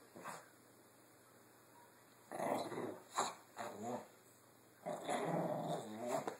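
Small dog growling in play, in several short bouts with a longer one near the end.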